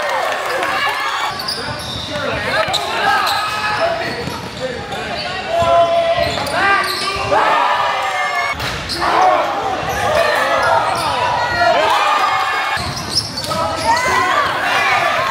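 Sounds of a basketball game in a gym: a ball bouncing on the court amid unclear shouts and calls from players and spectators.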